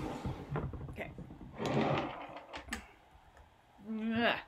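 A plastic watercolour palette and other things being moved about on a wooden tabletop: several light knocks, with a short scrape about halfway through as the palette slides across the wood.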